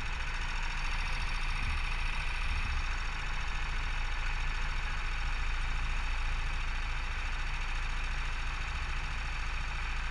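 Go-kart engine idling steadily, heard close from the kart's onboard camera, with no revving.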